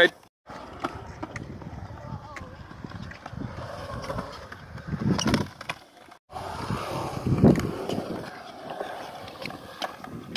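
Skateboard wheels rolling on smooth concrete, a steady rumble broken by scattered knocks of the board, with louder surges about five and seven and a half seconds in. The sound drops out briefly twice, near the start and about six seconds in.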